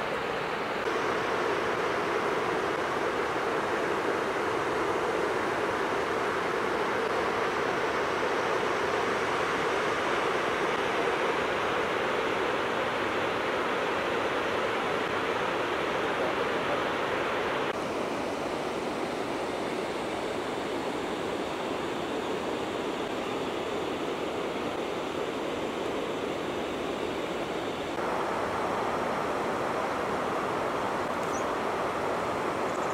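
Steady rush of river water flowing over a stony riverbed, its tone shifting abruptly a few times between takes.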